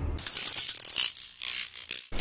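Ratchet-clicking sound effect: a quick run of mechanical clicks that thins out about a second in, then a second short run near the end.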